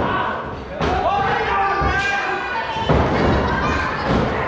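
Wrestlers hitting the wrestling ring mat: three heavy thuds, the loudest at the start and about three seconds in, with shouting voices from the crowd over them.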